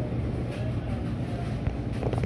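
Steady low hum of supermarket ambience.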